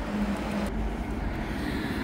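Steady low background rumble with a faint constant hum, and no distinct event.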